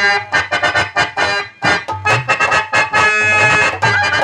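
Harmonium playing a quick run of short, clipped notes as the instrumental accompaniment to a Telugu padyam.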